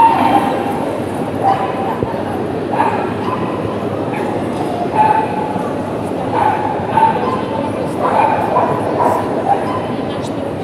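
Dogs yipping and barking in short calls every second or two, over the steady murmur of a crowd in a show hall.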